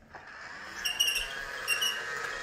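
Battery-powered Casdon toy Dyson Ball vacuum switched on, its small motor starting and running with a loud steady whir that swells in the first second. Short high squeaks come in about a second in and again near the end as it is pushed, from the sticky rear wheels.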